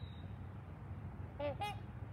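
Swans calling: two short nasal honks in quick succession about a second and a half in.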